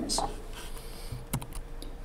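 A pause in speech: faint room tone with two short clicks about a second apart.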